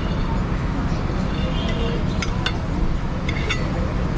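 A metal fork clinking and scraping against a ceramic plate, with several short clinks in the second half, over a steady low rumble.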